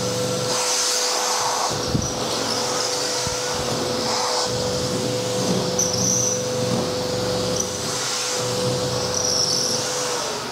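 Milwaukee M18 cordless backpack vacuum running on high, driving a Dyson soft-roller cleaner head, with a steady whine throughout. The rush of air swells and fades as the head is swept back and forth over a hard table top.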